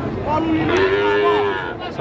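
A young calf mooing: one long call of about a second and a half that rises slightly in pitch and then holds.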